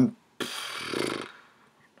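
A man's wordless hesitation sound: a breathy exhale about half a second in, running into a low, creaky drawn-out "uhh" that fades out by the middle.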